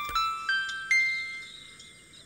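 Three bell-like chime notes rising in pitch, about 0.4 s apart, each ringing on and fading away.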